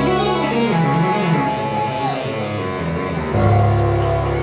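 Live rock band playing through the PA: electric guitar over keyboard chords, with a long held, bending guitar note in the middle and a louder full-band chord near the end.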